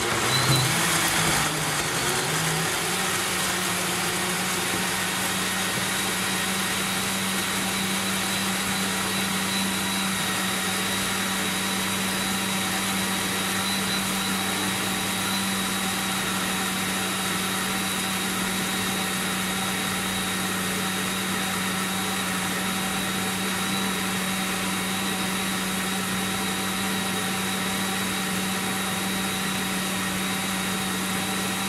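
Single-serve personal blender motor running continuously as it blends chunks of beetroot, strawberry, watermelon and banana with a little water. Its pitch wavers and climbs over the first two seconds or so while the chunks are chopped, then it settles into a steady whir.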